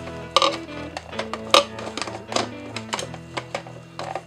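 Sharp clicks and knocks of a plastic model kit part being handled and pushed into place, about six in all, the strongest about a second and a half in. Soft guitar music plays steadily underneath.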